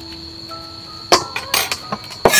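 Cleaver striking a wooden chopping board about a second in, followed by a short scrape and a lighter knock as it cuts into a bitter gourd.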